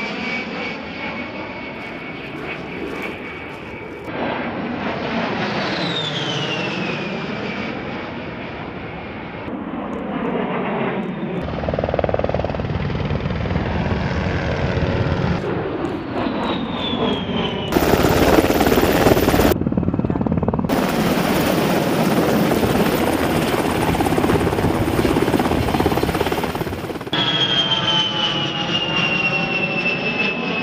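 Fairchild Republic A-10 Thunderbolt II's twin TF34 turbofan engines whining as it flies past, the whine falling in pitch with each pass, several times over with abrupt changes between passes. A loud rushing noise lasting a second or two comes about two-thirds of the way through.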